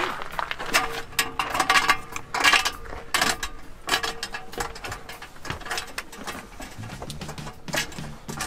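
Irregular knocks, clicks and rattles of people climbing the fold-out metal steps into a truck camper and moving around inside it, with a faint steady hum underneath.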